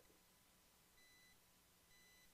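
Near silence as the voice cuts out, with a very faint high electronic beep about a second in and again at the end.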